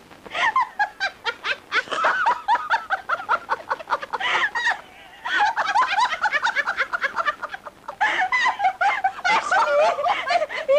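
A woman's loud, cackling laughter in rapid high bursts, shrill and bird-like, broken by two short pauses.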